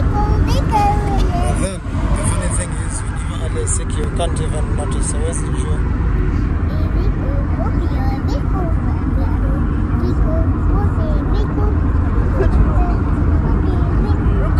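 Steady low road and engine rumble of a car driving, heard from inside the cabin, with a faint high hiss over it during the first few seconds.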